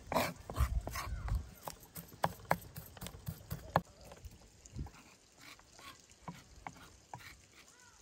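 Kitchen knife chopping garlic on a wooden cutting board, the blade tapping the board in short sharp strokes. The taps are loudest and quickest in the first half, then sparser and quieter.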